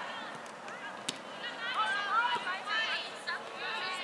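Several people's voices calling and shouting at a distance across a soccer field, with one sharp knock about a second in, typical of a soccer ball being kicked.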